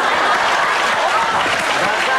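Studio audience clapping and laughing in a dense, steady wash, with a few voices over it.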